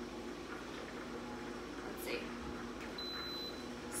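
Instant Pot pressure cooker's control panel giving one short, high beep about three seconds in while its yogurt program is being set, over quiet kitchen room tone.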